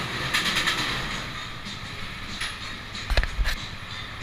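Clattery background noise from an antique-car ride, with light rattling near the start and two sharp knocks about three seconds in as a child climbs into a ride car.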